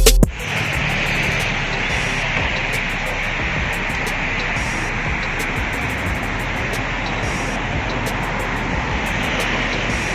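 Background music cuts off about a quarter second in, leaving a steady rushing noise of wind and road traffic picked up from a moving bicycle.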